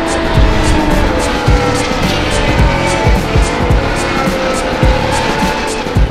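Formula 1 cars' turbo V6 engines whining as they pass one after another, each note falling in pitch as the car goes by. Background music with a steady beat plays under them.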